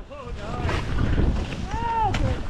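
Wind rushing over the microphone and skis moving through deep powder snow, with a short whooping voice near the end.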